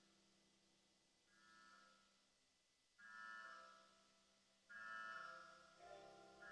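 Faint, slow ambient modular-synthesizer music played with a Physical Synthesis Cicada: soft pitched tones that swell in and fade away one after another, about one every one and a half seconds.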